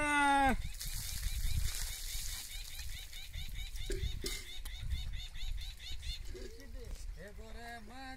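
Wind buffeting the microphone in an open field, with faint, rapid bird chirping for a few seconds. A man's sung note ends within the first half second, and his voice returns faintly near the end.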